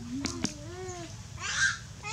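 Animal calls: a few short squealing calls that rise and fall in pitch, with a louder, harsher call about one and a half seconds in.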